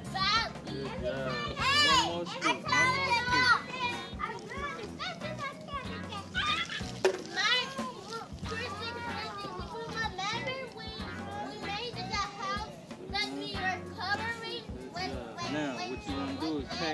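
Several children's voices calling out and chattering over one another, with background music.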